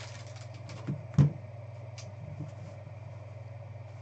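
Trading cards being handled on a tabletop: a small knock, then a sharper one about a second in, and a few faint clicks as a stack of cards is picked up, over a steady low hum.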